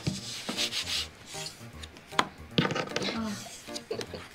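Playing cards rubbed and slid across a wooden tabletop and turned over, with a few sharp card taps, the clearest about two seconds in.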